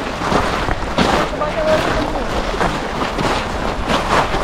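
Wind buffeting the microphone, a steady low rumble with gusty rushes, with faint voices in the background.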